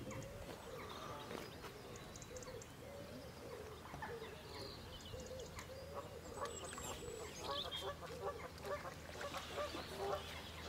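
Faint honking of geese, many short calls one after another.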